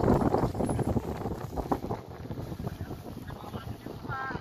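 Wind buffeting the camera microphone in irregular gusts, with a low rumble. It is strongest in the first second or so and eases after about two seconds.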